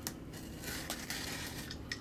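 Utility knife blade slitting the packing tape along a cardboard box seam: a click at the start, then about a second of scratchy slicing in the second half.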